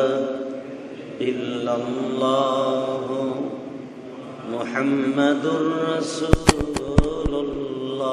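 A man's voice chanting in long, wavering melodic phrases into a microphone, with short pauses between phrases. A few sharp clicks come in quick succession about six to seven and a half seconds in.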